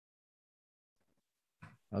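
Near silence, with the audio gated off, for most of the time; near the end a short vocal sound as a person's voice starts up.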